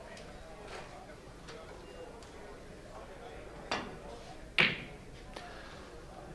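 A billiard cue tip striking the cue ball, then about a second later a louder crack as the cue ball hits the red, followed by a softer knock, over the quiet murmur of a hall.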